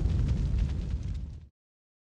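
Tail of a sound-effect boom on an end card: a deep low rumble dying away under faint crackles, cut off abruptly about one and a half seconds in.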